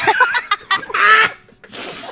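Loud laughter in short, uneven bursts, strongest in the first second and a half, then tailing off into a quieter breathy laugh near the end.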